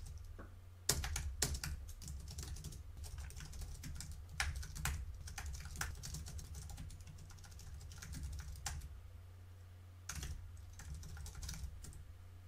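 Typing on a computer keyboard: irregular runs of keystroke clicks with short pauses, over a low steady hum.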